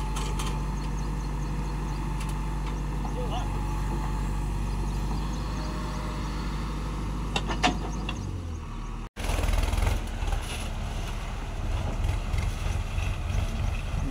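JCB backhoe loader's diesel engine running steadily while the backhoe works a sand pile, with a couple of sharp metallic clanks about seven and a half seconds in. After a brief break in the sound near nine seconds, the engine is louder and rougher.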